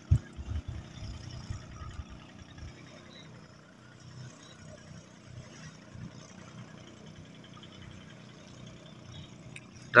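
Faint outdoor background noise with uneven low rumbling, strongest in the first few seconds, and a single short knock right at the start.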